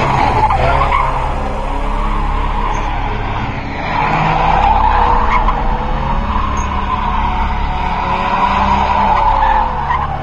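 A car's tyres squealing in a long, continuous slide through a corner. The squeal wavers in pitch, eases briefly about three and a half seconds in, then comes back louder.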